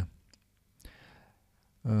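A man's voice trails off, followed by a quiet pause holding a few faint clicks and a soft breath about a second in, then a drawn-out 'um' begins near the end.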